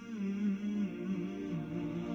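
Background vocal track: a single voice humming a slow, gliding melody without words.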